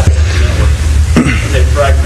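An audience member asking a question, heard indistinctly in the middle, over a steady low electrical hum and hiss.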